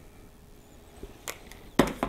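A couple of light clicks, then one loud, sharp knock and a smaller one right after near the end: a small plastic measuring spoon and a bowl of cinnamon sugar being handled and set down on a hard kitchen counter.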